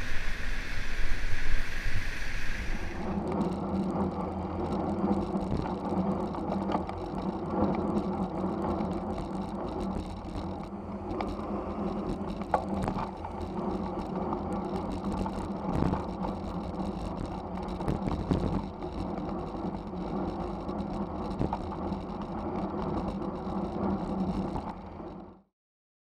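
Road and wind noise from a helmet camera on a bicycle riding through traffic, with a steady low hum. The noise changes character about three seconds in and cuts off suddenly near the end.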